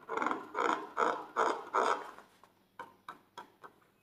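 Squeaks of a filled rubber balloon being rubbed and squeezed between two hands: five squeaks in a steady rhythm, about two and a half a second, ending about two seconds in. Then several light, quick taps of fingertips on the balloon.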